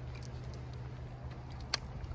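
Footsteps on a frosty paved road: faint, irregular ticks over a steady low rumble, with one sharp click near the end.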